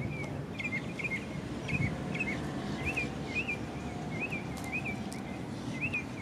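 A bird chirping over and over, short rising-and-falling calls about twice a second, over a steady low outdoor rumble.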